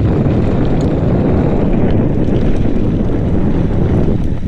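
Steady, loud wind noise on a bike-mounted camera's microphone, over the rumble of mountain-bike tyres rolling down a loose, rocky dirt trail.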